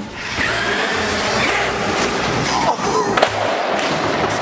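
Brushless electric motor of a Traxxas X-Maxx RC monster truck whining at high throttle as the truck launches off a ramp and flies. There is a sharp impact about three seconds in.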